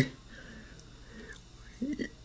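A pause between lines of voice-acted dialogue: a spoken word trails off at the start, then only faint breathy sounds, and a brief voiced sound, like a breath or short syllable, comes near the end.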